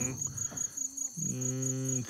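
Crickets chirping in a fast, even, high-pitched pulsing trill. In the second half a man holds a drawn-out 'umm' over it.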